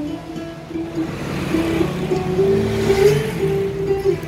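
Acoustic guitars playing, with a held melody note over them that climbs slowly in pitch through the middle.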